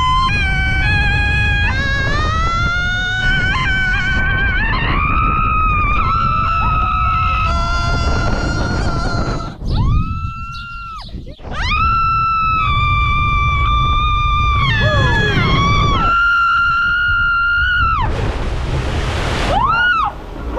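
A woman screaming on fairground rides in a series of long, held, high-pitched screams that slide in pitch, broken by short breaths, over the rumble of the ride and wind. Near the end there is a loud rush of splashing water.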